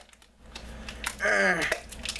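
Hands handling and working open a package, with scraping and clicking noise, and a short falling vocal sound about a second in.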